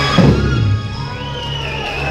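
Live rock band hitting the last note of a song, with a falling slide, then the final chord ringing out with a steady held tone.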